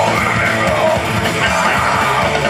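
A metal band playing live, with yelled vocals over electric guitars, bass and drums at a steady high volume.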